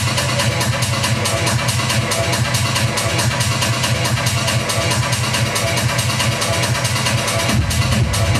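Electronic dance music from a DJ set, played loud through a club sound system with a steady, driving beat and heavy bass. A deeper sub-bass comes in near the end.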